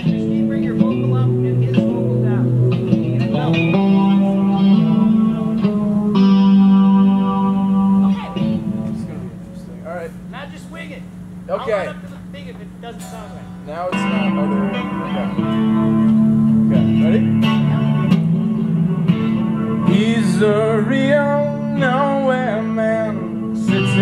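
Electric guitar strummed through an amplifier, sustained chords ringing. It drops away for several seconds in the middle, then the chords resume and a man's singing voice comes in near the end.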